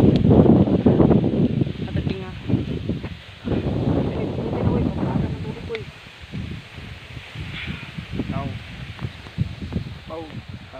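Wind rumbling on a phone microphone and rustling tall grass, loudest in the first half, with people's voices calling briefly near the end.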